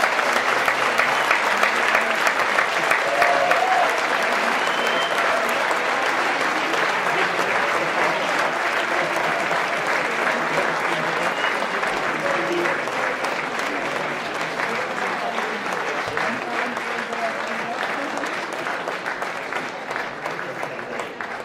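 A large audience applauding, steady dense clapping that slowly tapers off over the last several seconds.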